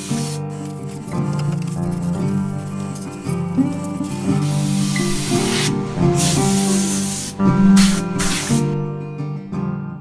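Several hissing bursts of compressed air from a blow gun blasting dust and debris out of a vehicle's floor and seat, over steady background music.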